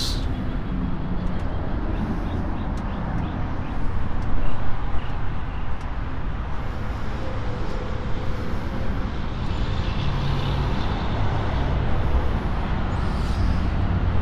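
Steady low outdoor rumble of background noise, with no distinct events.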